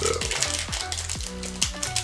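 Foil booster pack wrapper crinkling and crackling as it is torn open by hand, over background music with a steady beat.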